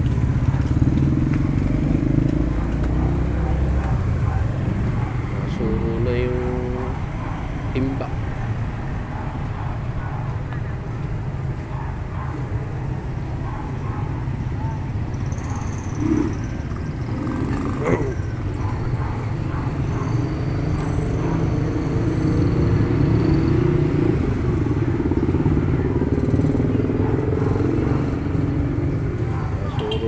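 Street traffic: the small engines of motorcycle tricycles and motorbikes running and passing, a steady low drone with a few brief louder sounds from passing vehicles.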